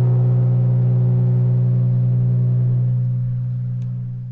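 The last note of the intro jingle: one low note held and ringing steadily, fading away near the end.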